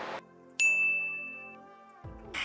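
A single bright ding, a chime-like sound effect, struck about half a second in and fading out over the next second and a half.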